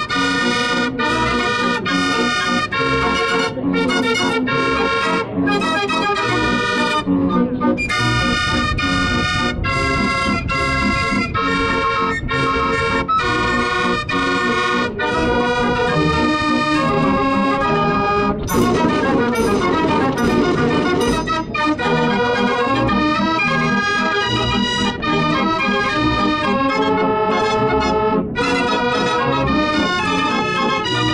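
Restored Dutch street organ playing a tune: its pipes sound chords and melody in a steady beat, with a denser, busier stretch a little past the middle.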